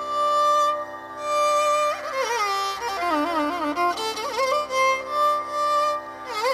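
Carnatic violin playing a melodic passage in raga Kanada over a steady drone, holding long notes and, around the middle, ornamenting with rapid oscillating gamakas.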